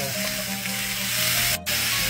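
Ground beef and Italian sausage sizzling with onions in a hot cast-iron skillet while a masher breaks up and stirs the meat. The sound dips briefly near the end.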